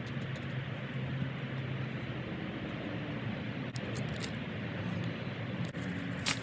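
Steady low hum of distant traffic, with a few faint clicks and rustles as hands work at the soil around a seedling.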